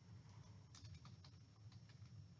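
Faint, irregular clicks of typing on a computer keyboard, in near silence.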